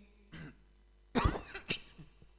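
A man coughs: a short, faint sound near the start, then a loud cough about a second in, followed by a shorter cough.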